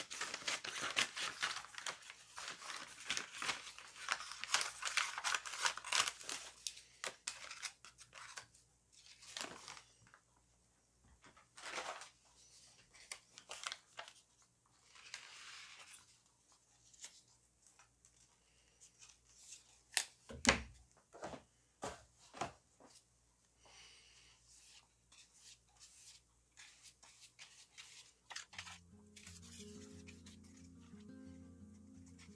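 Paper being torn and handled: a dense run of tearing and rustling for the first six seconds or so, then scattered crinkles and small taps, with one louder knock about 20 seconds in. Background music comes in near the end.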